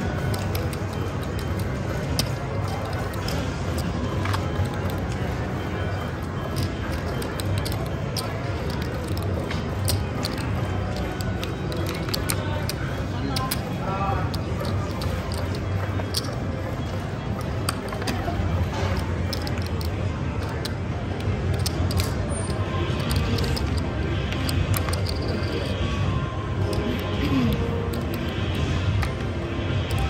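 Casino ambience: a steady murmur of voices and music, with light clicks of cards and chips being handled on the table.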